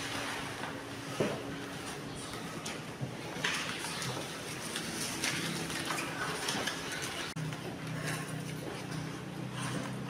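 Classroom background of faint children's chatter, with paper number cards being handled and shuffled on a wooden desk and a few light knocks.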